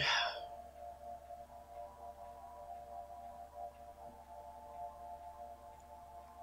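A faint, steady drone of several held tones that do not change in pitch, with a brief louder sound right at the start.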